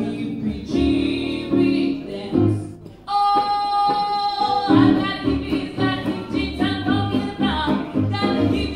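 Gypsy jazz band playing live: two acoustic guitars chording in rhythm over a plucked double bass, with a woman singing. About three seconds in she holds one long note before the band's rhythm picks up again.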